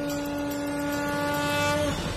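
Dramatic background music: one long held note with overtones, growing slightly louder and then breaking off just before the end.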